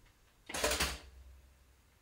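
Four-slice electric toaster's lever pushed down and latching: a short metallic clunk and rattle about half a second in, with a low hum lingering for a second after it.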